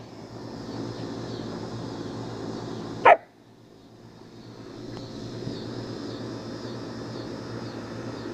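A German Shepherd puppy gives one short, high bark about three seconds in, over a steady low hum.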